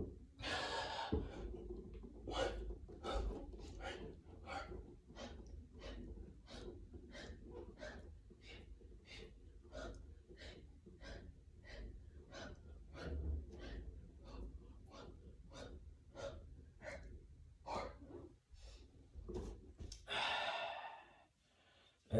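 A man breathing hard through a set of push-ups: short, forceful breaths at an even pace of about two a second, with a longer, heavier breath out near the end as the set finishes.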